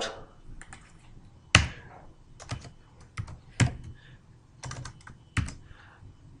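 Typing on a computer keyboard: about a dozen irregularly spaced key clicks, the sharpest about one and a half seconds in.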